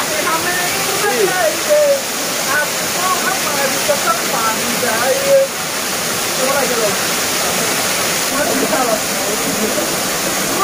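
Small waterfall pouring onto rocks, a steady, even rush of water, with men's voices talking over it.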